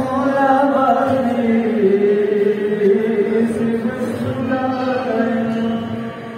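A voice chanting a Balti qasida, a devotional poem, in long held notes that waver and glide in pitch. The phrase ends near the end.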